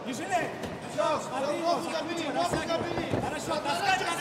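Arena voices: several people shouting and calling out at some distance, with a few soft knocks.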